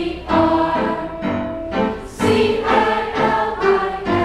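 A school choir singing, several voices together in short held phrases with brief breaks between them.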